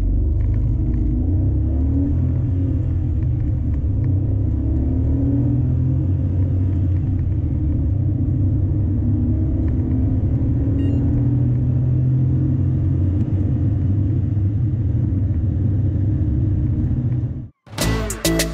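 Renault Kwid's three-cylinder petrol engine heard from inside the cabin, accelerating hard from a standstill to 100 km/h. It is a steady, loud low drone with road noise, and it cuts off sharply just before the end.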